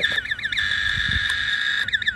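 Inductive tone probe held to the white wire of a telephone pair: the warbling trace tone dies away within the first half-second, leaving only a steady high-pitched whine and no clear tone. A missing tone on one leg usually means an open circuit or an insulation resistance fault on that cable.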